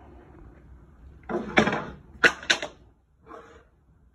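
A short clatter about a second in, followed by two sharp knocks and a softer scrape, as objects are handled and set down.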